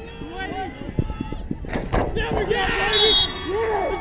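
A soccer ball is struck and smacks into the goal, with sharp knocks about a second in and just before two seconds, followed by players shouting and cheering. A short, high whistle blast sounds about three seconds in.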